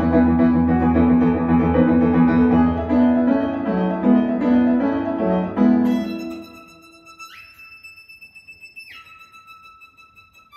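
Recorded piano music played back through Vienna Acoustics Haydn Grand Signature stand-mounted speakers, with deep bass under the piano. About six seconds in the music thins out to a quiet passage of a few high, held notes.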